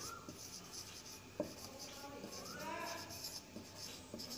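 Faint strokes and squeaks of a marker pen writing on a whiteboard, with a sharp tap about one and a half seconds in.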